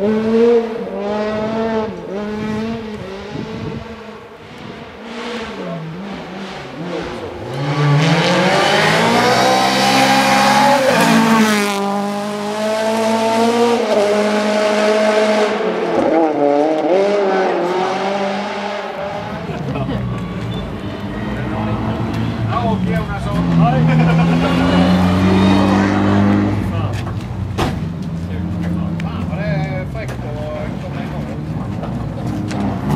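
Toyota Corolla rally cars at full throttle on a gravel special stage, engines revving up and dropping back with each gear change as they pass. The loudest pass comes about a third of the way in, with a heavy hiss of gravel and tyres, and another car's engine rises and passes later on.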